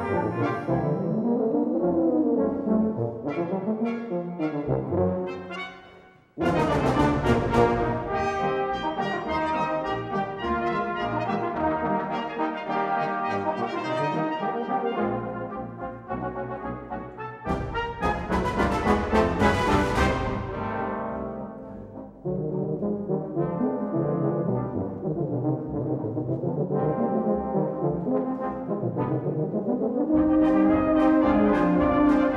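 A British-style brass band plays a concert piece. A lighter passage with a winding melody fades almost to nothing about six seconds in. The full band then comes in loudly with a percussion crash, and surges again with another crash a little past halfway before easing to a softer passage.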